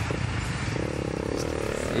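Motocross bike engine revving as the rider sets off on the step-up run-in. The steady low engine note grows fuller and louder about three-quarters of a second in as he accelerates.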